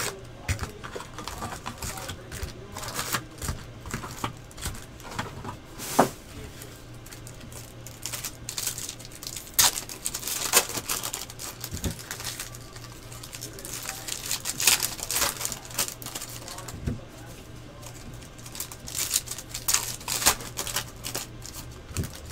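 Typing on a computer keyboard in bursts of quick clicks, with a little rustling in between, over a low steady electrical hum.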